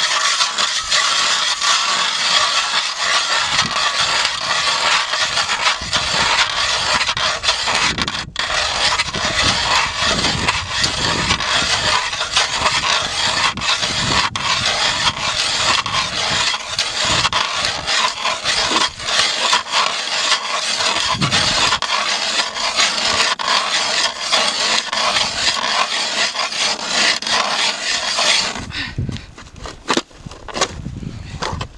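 Eskimo 8-inch hand ice auger cranked round, its blades cutting down into pond ice: a continuous harsh scraping and grinding with a brief pause about eight seconds in. The scraping stops a second or two before the end.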